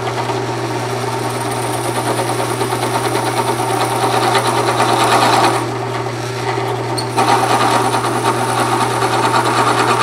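Drill press running with a steady motor hum while a twist drill bit bores into the end grain of a wooden broom handle. The cutting noise grows louder, eases off for about a second and a half a little past halfway, then picks up again.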